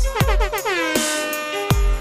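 Electronic dance remix with heavy kick-drum hits and a synth sound sliding in pitch during the first second.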